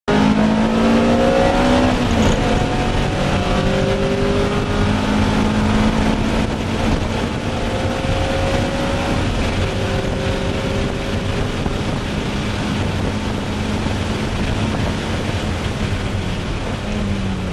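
1998 Honda Prelude Type SH's 2.2-litre VTEC four-cylinder engine at full throttle, heard from inside the cabin. The revs climb, drop sharply about two seconds in with an upshift, then hold high and rise slowly, over heavy wind and road noise.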